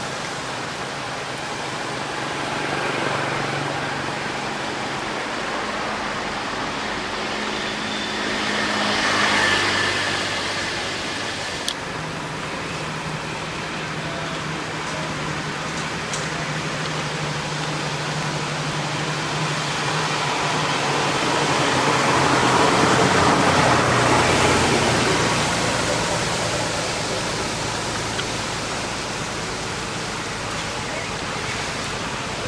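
Steady outdoor background noise with a low hum underneath. It swells slowly twice, about nine seconds in and again for a few seconds past the middle, with one sharp click near twelve seconds.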